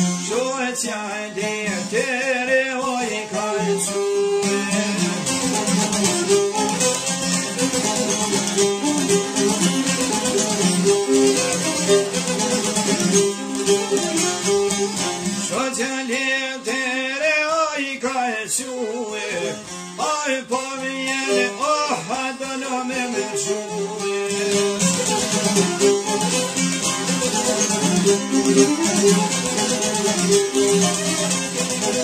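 Albanian folk music: plucked string instruments playing a steady accompaniment, with a voice singing in wavering, gliding phrases at times.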